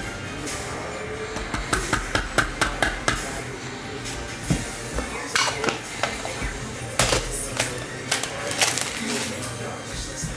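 Trading cards and clear plastic card sleeves handled on a tabletop: a quick run of light clicks and taps about two seconds in, then a few scattered clicks later, over quiet background music.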